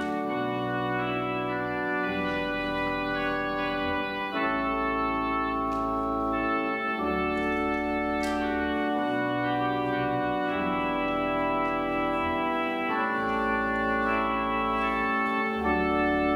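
Church pipe organ playing slow sustained chords that change every second or two over held low pedal notes.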